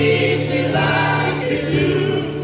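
Live acoustic rock performance: a male lead singer singing into a microphone over strummed acoustic guitar, heard from the audience.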